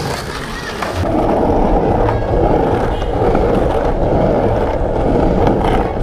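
Skateboard wheels rolling over a pump track's asphalt surface: a steady rolling rumble that gets louder about a second in.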